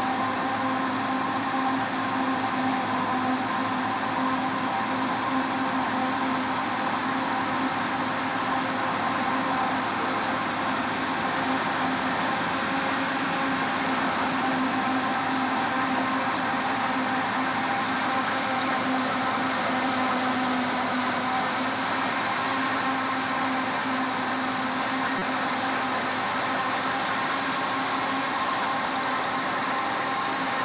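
Forage harvester chopping maize and blowing the silage through its spout into a trailer, with the tractor running alongside. It makes a steady machinery drone with a constant whine.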